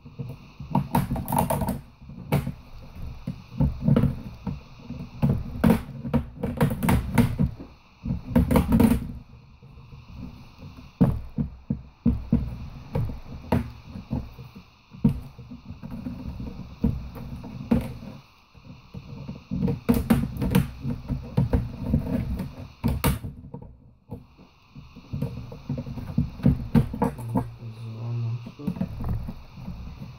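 Plastic top case of an HP Notebook 15 laptop being worked loose by hand: repeated clicks and crackles of plastic snapping and rubbing against plastic, over low knocks and handling noise.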